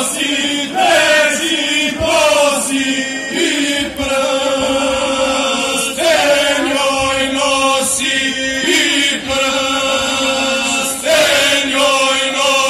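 Male vocal group singing an unaccompanied traditional folk song in long, held phrases over a steady low drone note. Each new phrase opens with an upward slide into the held melody note.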